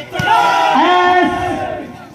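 Crowd of spectators yelling together in one long, loud shout, several voices overlapping, which fades near the end.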